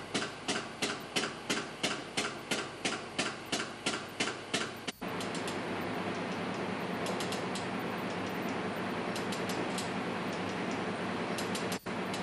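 Regular sharp mechanical clicking, about three clicks a second, for the first five seconds. After a brief break comes a steady mechanical noise with scattered clicks as a lever chain hoist is worked to turn the camshaft of a marine diesel engine.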